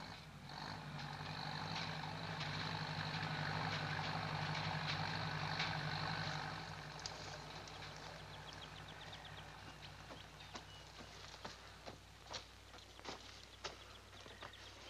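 A motor vehicle's engine running steadily, then fading away about six and a half seconds in, followed by scattered clicks and knocks.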